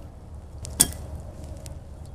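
Bonfire of dead leaves crackling: scattered small pops over a low rumble, with one sharp, louder pop a little under a second in.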